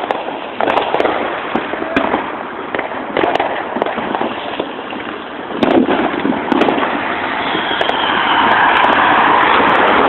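Fireworks and firecrackers going off all around: a dense run of pops and bangs over continuous crackling, growing louder and more continuous in the last few seconds.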